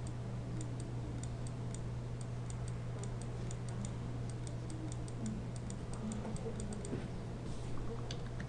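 Computer mouse clicking, several light clicks a second, unevenly spaced, over a steady low electrical hum.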